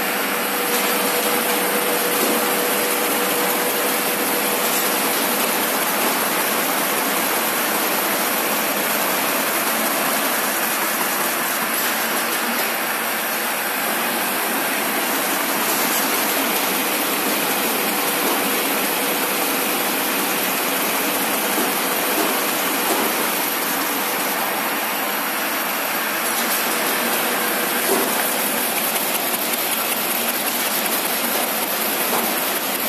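Automatic folder gluer running at speed, carrying carton blanks through its belts and rollers: a steady, even mechanical noise, with a faint steady tone in roughly the first half.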